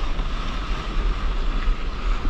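Wind buffeting the microphone of a camera mounted on a stand-up paddleboard, with whitewater spray rushing against the board as it rides a broken wave. The noise is loud and steady, with a heavy low rumble throughout.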